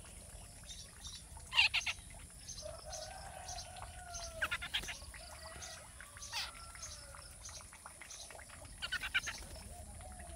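Babbler calls: three bursts of rapid, harsh chattering notes, about a second and a half in, at four and a half seconds and near nine seconds. A lower drawn-out call runs between them.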